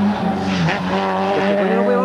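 Rally car engine running hard at high revs, its note dipping about half a second in and then climbing again as the car is pushed along the stage.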